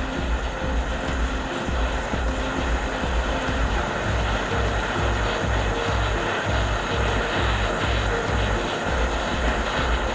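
Gas torch flame hissing steadily as it melts gold scrap into a molten bead. Background music with a steady low beat plays underneath.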